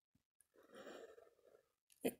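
Near silence, with a faint breath from the lecturer about a second in, between spoken phrases.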